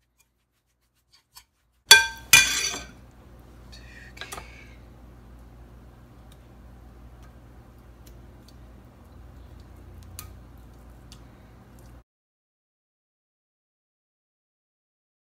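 A metal spoon clinks sharply against a glass mixing bowl twice, about two seconds in, each strike ringing briefly, followed by a fainter clink. After that only a faint low hum remains, with one small tick, and the sound cuts out near the end.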